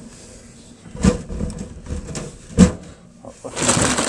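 Glass reptile tank being handled: two sharp knocks, about a second in and again about a second and a half later, then a scraping rush near the end.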